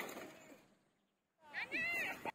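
A short, high-pitched cry that rises and falls, coming in about one and a half seconds in, after a brief knock at the start and a quiet stretch.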